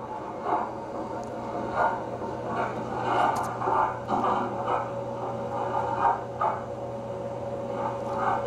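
Soundtrack of a film played back through loudspeakers in a room, muffled and indistinct, with irregular short sounds over a steady low electrical hum.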